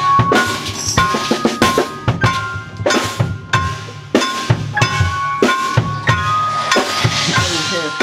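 Band playing a passage of the piece: drum and percussion hits throughout, with a repeated high held note above them.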